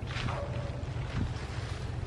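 Wind buffeting the camera microphone: a steady low rumble, with a faint brief higher sound near the start.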